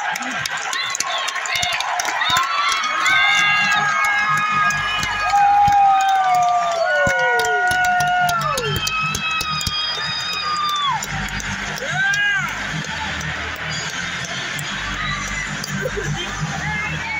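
Music over an arena sound system, with held notes that slide downward and a pulsing bass beat coming in about four seconds in, over the noise of a hockey crowd.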